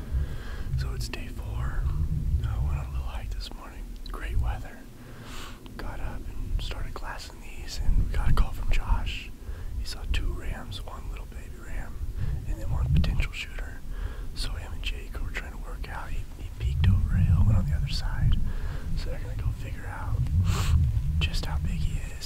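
Wind buffeting the microphone in uneven low gusts, under a man speaking quietly, close to a whisper.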